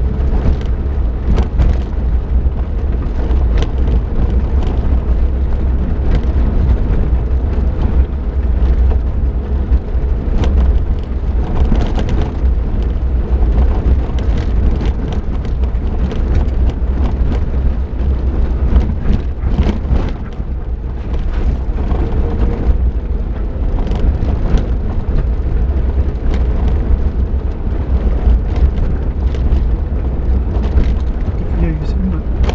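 Suzuki Jimny driving along a rough gravel track, heard from inside the cab: a steady deep rumble of engine, tyres and body, with frequent short knocks and rattles as it jolts over the uneven surface.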